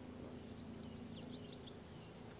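A small bird chirping faintly, a quick run of short high notes starting about half a second in, over a steady low hum.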